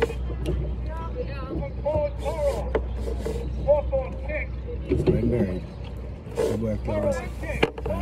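Untranscribed voices in short broken phrases, over a steady low rumble on the microphone, with a few sharp clicks.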